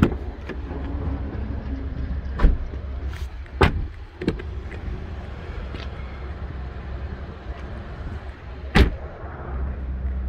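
Doors of a 2019 Chevy Blazer being opened and shut: several sharp thuds, one of the loudest near the end, over a steady low rumble.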